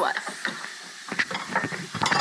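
French fries frying in a pan of hot oil, a steady sizzle, with a few light clicks.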